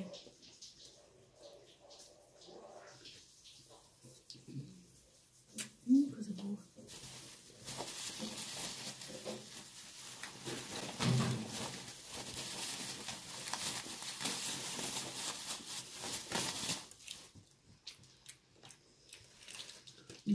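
Crinkly rustling of a bag being handled for about ten seconds, starting abruptly a few seconds in and stopping near the end, as a bread roll is taken out.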